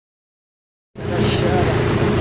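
Silence for about the first second, then an abrupt cut into a vehicle engine running steadily with a constant low hum, heard from the open cargo bed where the cow stands.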